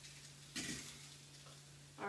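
Faint kitchenware handling as grilled chicken is moved from a grill pan into a bowl, with one soft knock about half a second in, over a low steady hum.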